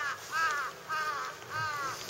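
A bird calling four times in quick succession, each short call rising and falling in pitch.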